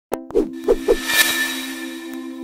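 Logo intro sting: a sharp click, three quick short low hits, then a bright shimmering swell over a held musical note.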